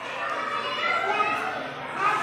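Children's voices talking in the background, softer than the speech around it, with no clear words.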